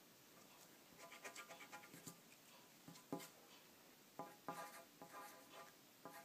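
Faint pencil writing on paper: short strokes in several quick bursts, starting about a second in.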